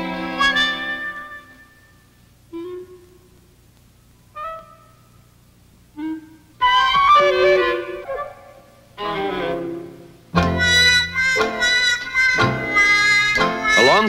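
Instrumental background music. A held chord fades out, three short single notes sound about two seconds apart, and then a busy melodic passage starts about halfway through and grows fuller near the end.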